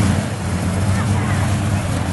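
A steady low engine drone with wind buffeting the microphone.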